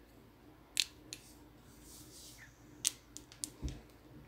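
A few short, sharp clicks and light handling noise from hands working hair into rollers and clips: two clicks about a second in, a quick cluster near the end, and a soft thump just before the end.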